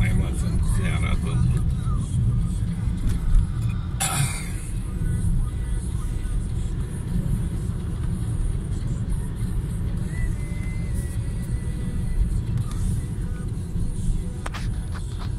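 Inside a moving car: a steady low rumble of engine and road noise, with one brief sharp noise about four seconds in.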